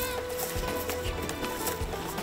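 Background music with long held notes, over the soft hoof steps and jingling tack of a saddled horse being led at a walk.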